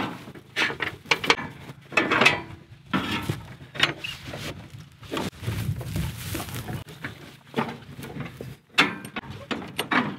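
Irregular metal clanks, knocks and rattles as scrap-steel hitch bars and a push mower deck are shifted and fitted onto a riding mower's frame.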